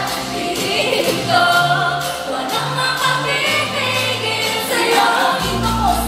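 Live pop song: several female voices singing together over a backing track with a heavy bass line. The deepest bass drops out for a few seconds midway and comes back in strongly shortly before the end.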